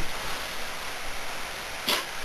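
Steady hiss of background noise with no distinct event, and a brief sharp sound near the end.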